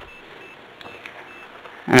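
Thick starch-based bioplastic gel bubbling faintly as it simmers in a saucepan on a hot plate, bubbling up as it reaches the finished stage. A faint high electronic beep repeats about three times a second through it.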